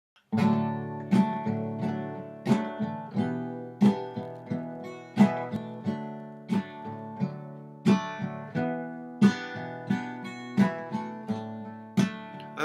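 Solo acoustic guitar playing a slow introduction: chords struck in an even rhythm about every two-thirds of a second, each left ringing into the next.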